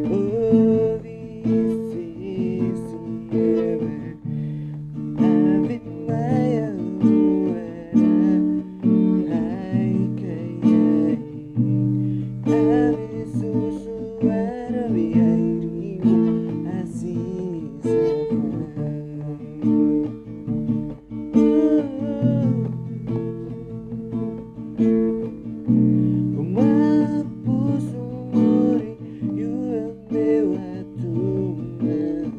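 Capoed steel-string acoustic guitar strummed in a steady rhythm, with a man singing along.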